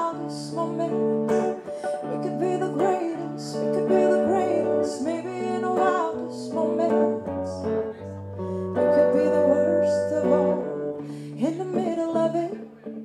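A woman singing a pop ballad live, accompanied by a Telecaster-style electric guitar over long sustained chords.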